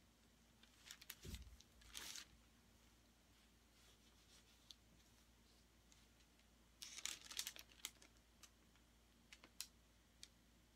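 Mostly near silence, broken by brief crinkling and rustling about one to two seconds in and again about seven seconds in, with a few single ticks: handling noise from plastic gloves and paper as a canvas is tilted and held.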